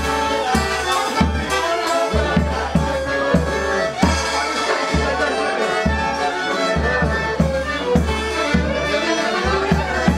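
Polish folk band playing dance music: fiddle and accordion carrying the tune over a bass drum with mounted cymbal, the drum beating steadily about twice a second.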